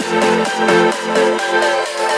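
Background electronic dance music: a fast repeating synth pattern over steady held chords and regular hi-hat ticks, with the deep bass dropping out about half a second in.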